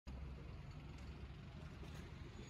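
Faint, steady low rumble of outdoor background noise.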